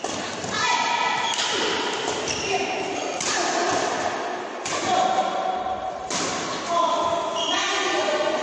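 A woman speaking close to the microphone. A few sharp thuds sound about every one and a half seconds in a large echoing hall.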